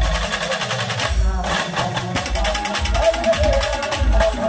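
Live Indian street-band music, loudly amplified through truck-mounted speaker stacks. A heavy bass-drum beat falls about twice a second under busy percussion and a wavering high melody line. The bass drops out briefly just under a second in, then comes back.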